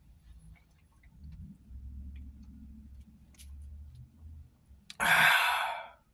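A man drinking beer from a can, with faint low swallowing sounds for a few seconds. About five seconds in comes a loud, breathy exhale, a satisfied 'ahh' sigh after the swig, lasting about a second and fading out.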